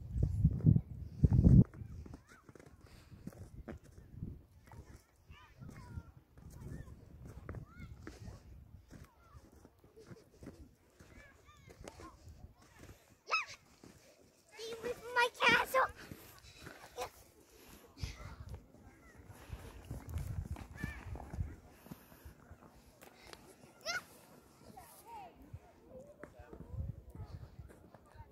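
Children's voices calling and shouting in the open, mostly distant and wordless, with one loud, high shout about halfway through and another sharp call later on.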